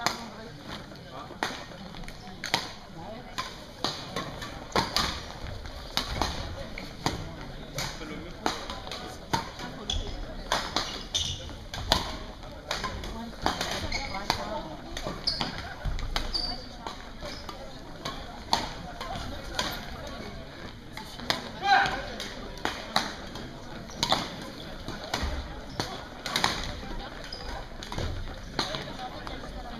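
Badminton rackets hitting shuttlecocks and players' footfalls on a sports-hall floor: many sharp, irregular hits from this and neighbouring courts, over a steady murmur of voices in the hall.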